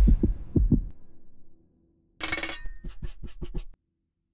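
Title-sequence sound design. A few low, fading thumps close out the intro music. After a short gap come a brief noisy swish and a quick run of about seven sharp strokes, which cut off suddenly.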